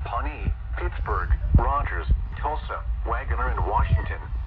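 Speech from the small speaker of an Eton American Red Cross emergency radio tuned to a weather-band channel, a continuous spoken broadcast. The sound is thin and cut off in the treble, over a steady low hum.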